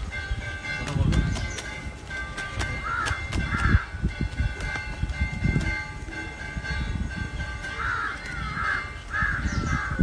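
Crows cawing in short pairs of calls, about three seconds in and again near the end, over a low rumble and a faint steady high tone.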